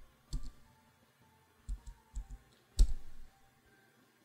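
Computer keyboard keystrokes: a few irregular, separate key clicks with pauses between them, the loudest a little before three seconds in.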